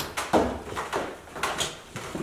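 Footsteps coming down a staircase: a series of uneven knocks and scuffs, several a second.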